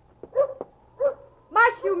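Sled dogs barking a few short times, about half a second apart, as the team is shouted into motion with "mush".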